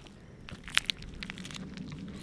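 Drink-mix packets crinkling as they are handled, with a few short crackles a little under a second in.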